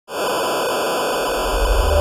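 Television-static hiss, like an untuned TV, starting abruptly and holding steady. A low bass tone swells in under it near the end as an intro jingle begins.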